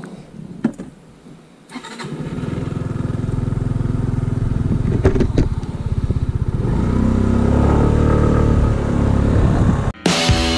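Kawasaki J125 scooter's 125 cc single-cylinder four-stroke engine starting. A few clicks come first, the engine catches about two seconds in and runs steadily, then rises in revs around seven seconds in.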